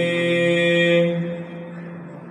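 A man's chanting voice reciting Sikh scripture holds one long steady note at the end of a line, then fades out about a second and a half in.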